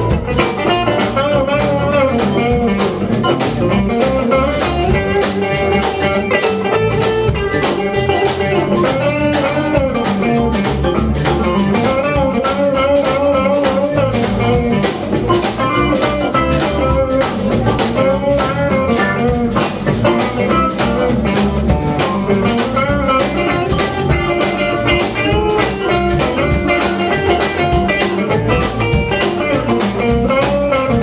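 Live alt-country rock band playing an instrumental break: electric guitars, pedal steel guitar and keyboard over a steady drum-kit beat. A lead line slides and bends in pitch through the passage.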